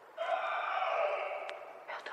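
Radio-play sound effect of a horse screaming in terror: one drawn-out cry about a second and a half long, sliding slightly down in pitch.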